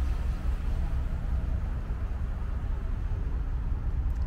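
Steady low rumble with an even hiss above it, with no distinct knocks or clicks.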